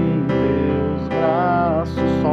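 Electronic keyboard in a piano-like voice holding a C major chord over E (C/E). A man's voice sings along on a held, wavering note in the second half.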